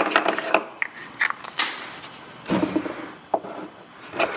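Unpainted wooden nesting-doll halves being twisted and pulled apart by hand: wood rubbing on wood, with several light wooden knocks and clicks scattered through.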